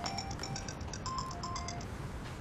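Mobile phone ringtone: a quick, bright electronic melody of short high notes, which stops near the end as the call is answered.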